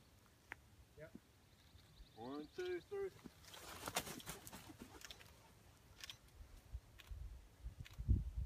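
Mostly quiet open-air ambience with a high, rapid trill and a few short exclamations from onlookers, rising in pitch, about a quarter of the way in. A brief burst of rustling noise follows about halfway through.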